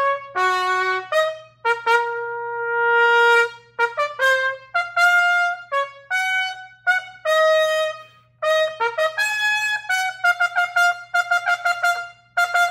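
King 1117 'Ultimate' marching B-flat trumpet played solo, bright and cutting, through a passage of separately tongued notes. About two seconds in, a long held note drops in volume and swells back up, a forte-piano crescendo. Near the end comes a quick run of rapidly repeated notes.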